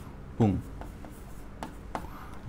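Marker pen writing on a glass lightboard: a few short, faint strokes and taps.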